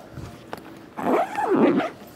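Zipper on a padded guitar backpack pulled shut: faint handling rustles, then one quick zip about a second in, lasting under a second.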